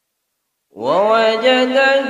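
Total silence for the first two-thirds of a second, then a man begins melodic Quran recitation (tajweed). His voice slides up and settles into long held notes.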